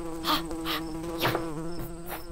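A fly buzzing steadily while a plastic fly swatter is swung through the air several times, each swing a short swish.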